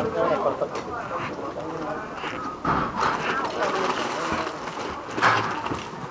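Several horses stepping and shifting their hooves as they stand close together, with a few short knocks, over a background of people talking.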